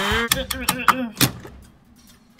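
A quick run of light clicks and knocks from die-cast toy cars being handled on a plastic playset, the loudest knock a little past the middle, then near quiet.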